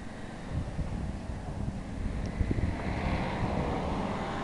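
Wind buffeting the camera microphone in low rumbling gusts, with a broad rushing noise growing louder in the second half.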